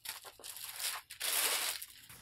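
Clear plastic wrapping crinkling and rustling as a soft fabric bag is pulled out of it, in several bursts, the loudest in the second half.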